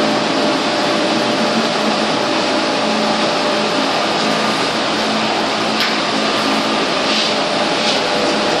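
Steady whirring noise from a running machine, with a faint constant hum, unbroken throughout.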